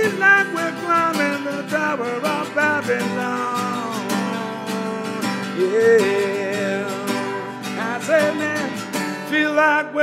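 A man singing while strumming an acoustic guitar. The strumming stops about nine seconds in, leaving the voice over a held low note.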